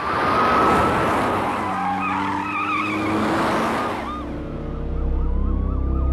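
A police siren wailing in slow rising and falling sweeps over engine and road noise from passing vehicles, with a brief wavering squeal about two seconds in.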